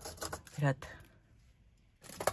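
A woman's voice says one short word, with faint rustling from a paper craft flower being handled, then a quiet stretch of room tone.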